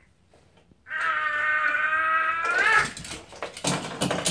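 A toddler's drawn-out vocal squeal, held at one steady pitch for about two seconds and bending upward as it ends, then a shorter, noisier burst near the end.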